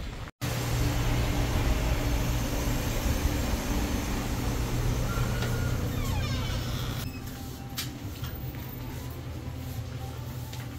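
A steady low machine hum, loud at first, that drops away about seven seconds in to a quieter background with a few sharp clicks.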